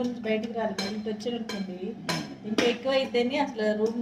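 Steel spoon clinking and scraping against a steel plate during a meal: several sharp clinks, the loudest about two seconds in.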